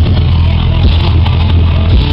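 Live thrash metal band playing at full volume: distorted electric guitars, bass and drums in a dense, unbroken, bass-heavy wall of sound.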